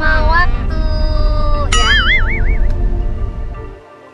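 Low rumble of road noise inside a moving car's cabin, with high-pitched tones over it that glide down and then waver quickly up and down for about a second. Near the end the rumble cuts off and only quieter background music remains.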